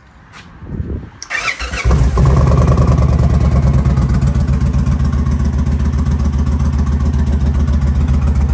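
Indian Challenger's Stage 2-cammed V-twin, with a Freedom 2-into-1 turn-out exhaust, cranking on the starter and catching about two seconds in. It then settles into a loud, steady, pulsing idle. The engine is already warm, so this is not a cold start.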